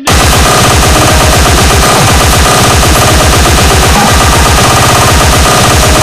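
Loud, distorted electronic music crashing in abruptly, driven by a very fast, rapid-fire kick drum pattern under a dense wall of noise.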